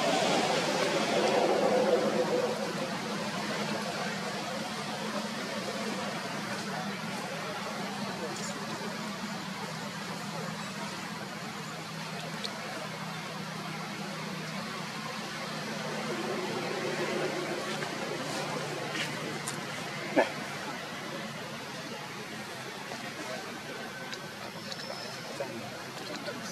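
Indistinct human voices in the background over a steady outdoor hum, with one sharp click about twenty seconds in.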